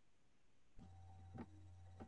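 Near silence: a faint steady electrical hum comes in about a second in, with a faint thin tone above it and a couple of faint clicks.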